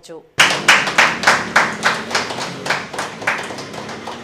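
A group of people clapping their hands, starting suddenly about half a second in with sharp claps about three a second, falling into a rhythm and fading toward the end.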